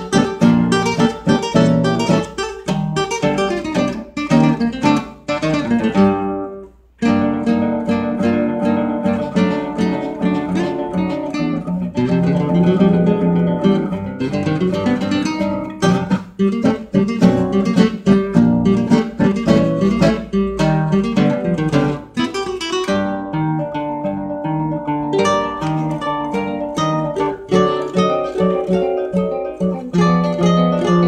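Two acoustic guitars playing an instrumental milonga together, with quick plucked melody over a strummed and plucked accompaniment. The playing breaks off briefly about six seconds in, then picks up again. The sound comes from a television broadcast, picked up by a phone filming the screen.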